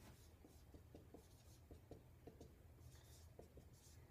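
Dry-erase marker writing on a whiteboard, a faint run of short strokes.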